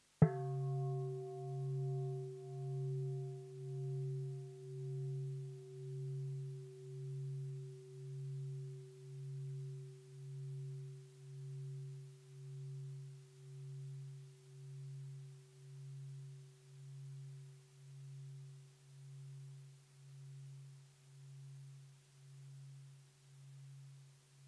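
Large bowl bell struck once, then ringing on with a deep tone that pulses about once a second and fades slowly; the higher overtones die away within a few seconds. It is a mindfulness bell, sounded to invite listeners to stop and return to themselves.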